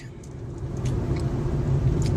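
Car cabin noise while driving: a steady low engine and road rumble that grows louder over the first second.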